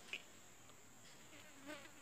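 Near silence: room tone, a faint steady hiss with a thin high-pitched whine, and a small mouth sound just after the start.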